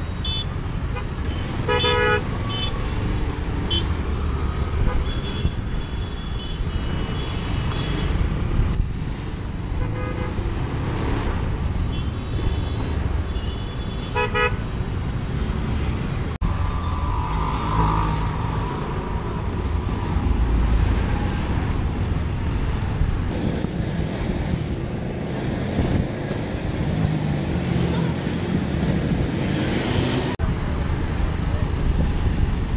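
Steady rumble of motorcycle engine and road noise while riding through city traffic, with several short vehicle horn toots, the clearest about two seconds in and again around fourteen seconds.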